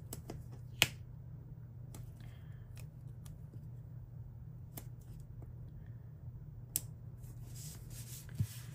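Fingers handling paper stickers and planner pages: a few sharp light clicks and ticks, the loudest about a second in, then paper rubbing near the end, over a steady low hum.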